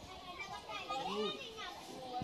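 Several voices talking and calling out at once, children's voices among them.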